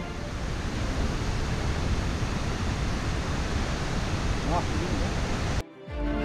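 Wind buffeting an action camera's microphone: a steady rush with heavy, gusting low rumble, cut off suddenly shortly before the end.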